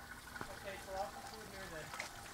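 A faint, distant voice talking, with a single click about half a second in.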